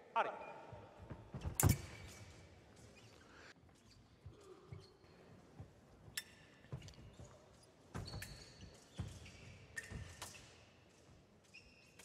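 Fencers' feet on the piste in a large hall: scattered thumps and stamps, a loud sharp one about two seconds in, and a few short high shoe squeaks later on.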